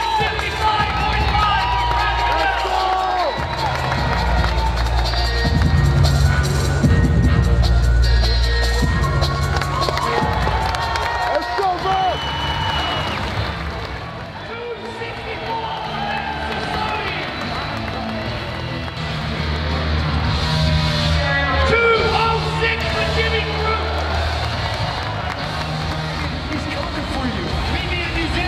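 Background music with a heavy, steady bass line, mixed with a crowd cheering.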